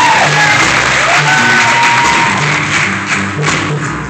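A live funk band with keyboard, drum kit and congas playing, with an audience cheering and clapping loudly over the music.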